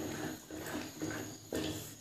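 Spatula stirring and scraping thick, sticky pumpkin halwa around a metal pan, in repeated strokes about every half second.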